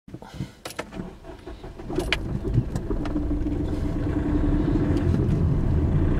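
Car driving along a road, heard from inside the cabin: a steady low rumble of engine and tyres that grows louder. A few sharp clicks and knocks come in the first couple of seconds.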